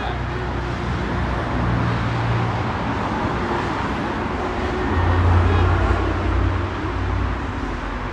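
Street traffic noise, with a vehicle passing and its low rumble growing louder about five seconds in.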